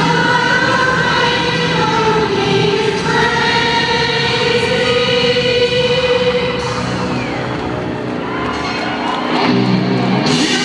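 Live arena concert music over the PA, with held, choir-like sung notes. It thins out for a couple of seconds, and the band comes back in fuller near the end.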